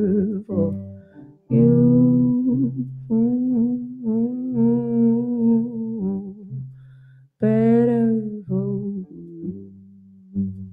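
A woman singing long, drawn-out notes, some with vibrato, over a hollow-body electric guitar played through an amplifier.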